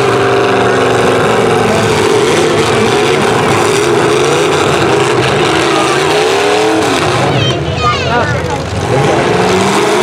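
Demolition derby cars' engines running hard and revving, the pitch rising and falling as they push against each other, with crowd voices mixed in.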